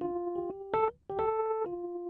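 A single-note keyboard melody, played from a MIDI keyboard through a software instrument: about seven held notes one after another, with a short break about a second in.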